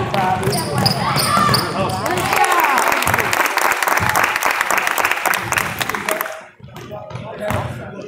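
A basketball being dribbled on a hardwood gym floor during a fast break, with spectators' voices over it. A dense stretch of voices and clicks fills the middle seconds, then drops away suddenly.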